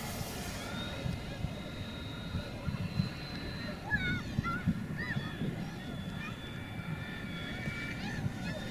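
RC model floatplane's motor and propeller droning steadily overhead, its pitch shifting slightly as it passes. A few honking calls, like geese, come about halfway through.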